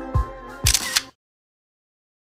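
Background music with a beat, ending about a second in on a short camera-shutter click sound effect, after which the sound cuts out.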